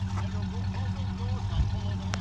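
International Harvester Scout's 345 cast-iron V8 idling steadily with a low rumble, with faint voices in the background.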